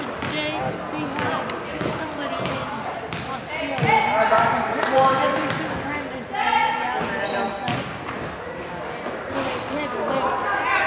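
A basketball being dribbled and bouncing on a hardwood gym court during a game, with shouting voices from players and spectators that swell about four seconds in and again past six seconds, echoing in the large gym.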